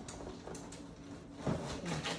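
A wrapped cardboard gift box being handled: faint rustling and tapping of the wrapping, with a soft thump about a second and a half in as the box is set down.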